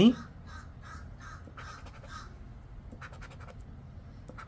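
A coin scratching the coating off a scratch-off lottery ticket: a quick run of rhythmic rasping strokes for about two seconds, then a few sharper scrapes near the end.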